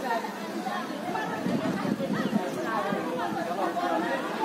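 Several people's voices talking over one another, with no break.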